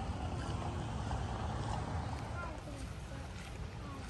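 Outdoor ambience of walking through a garden: a steady low rumble of wind on the microphone, with a few faint short chirps and faint voices in the background.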